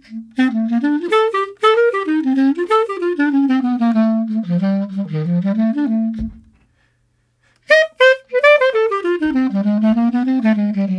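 Solo clarinet playing a running jazz line of quick notes that moves up and down. The phrase breaks off about six seconds in, and after a pause of about a second a new phrase starts.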